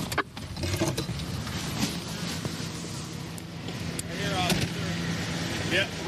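A police patrol car's engine running with a steady low hum under a haze of road and outdoor noise, heard from inside the car.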